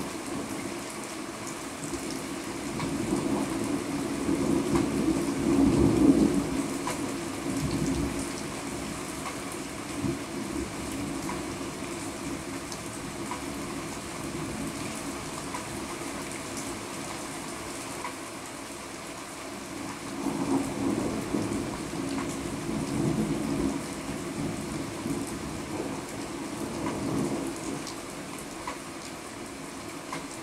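Steady rain during a thunderstorm, with two long rolls of thunder: the first builds to its loudest about six seconds in, and the second comes around twenty seconds in.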